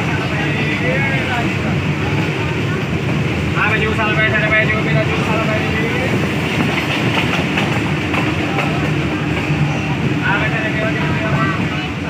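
Steady running noise of a passenger train in motion, heard from inside a coach at the window: wheels rolling on the rails with the coach rumbling. Voices come through in the background at times.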